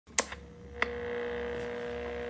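A sharp click, then a second click just under a second in, followed by a steady electric hum: intro sound design for the teaser.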